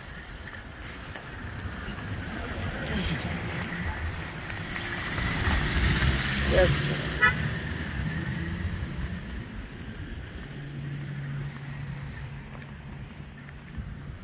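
Wind rumbling on the microphone of a handheld phone outdoors, swelling to a louder rush around the middle, with a low steady hum for a few seconds near the end.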